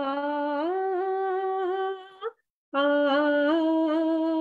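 A woman singing unaccompanied, holding a long sung 'aa' that steps up in pitch about half a second in and breaks off a little after two seconds; after a short pause she starts a second held 'aa' near the end. It is heard thin and band-limited, as over a video call.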